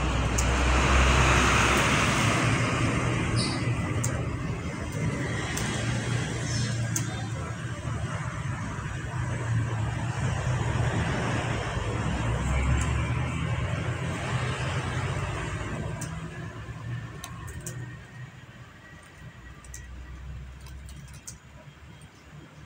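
Background road-traffic noise: a steady rumble and hiss that swells in the first couple of seconds and fades away over the last few seconds, with a few faint clicks.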